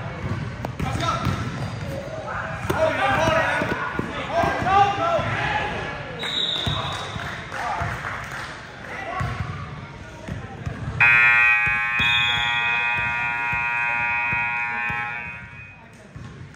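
Gym scoreboard buzzer sounding one long steady tone for about four and a half seconds as the game clock runs out, starting about eleven seconds in. Before it there are shouting voices and basketball bounces on a hardwood court.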